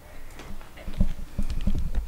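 Handling noise of a hand-held camera being moved: irregular low knocks and rubbing, denser and louder from about a second in.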